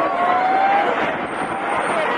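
Steady rushing roar of a tsunami flood surging through a town, with a thin drawn-out tone rising slightly in pitch over the first second.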